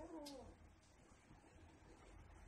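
Near silence, with one faint, short animal call at the very start that rises briefly and then falls in pitch.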